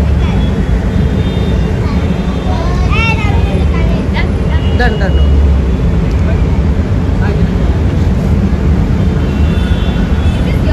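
Street noise: a loud, steady low rumble of traffic, with people's voices calling out over it.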